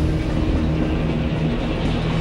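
A passenger train running past, a steady rush of noise, over background music.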